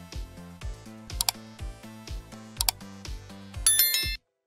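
Background music with a steady beat, overlaid by two sharp click effects about a second and two and a half seconds in, and a short, high, bell-like chime near the end. These are the sound effects of a like-and-subscribe animation.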